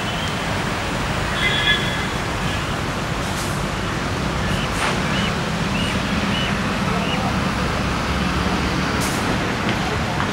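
Steady outdoor background noise with a low rumble, with a few short high chirps.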